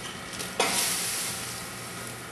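Granulated sugar pouring from a weigh-type powder filling machine's discharge chute into a hand-held bag. The hiss of falling grains starts suddenly about half a second in and then eases off, over the machine's steady hum.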